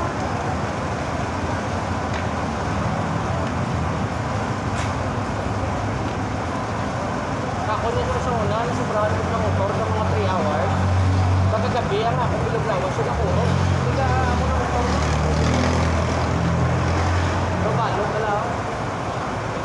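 Steady street traffic noise with indistinct voices. A vehicle engine's low rumble grows stronger in the second half.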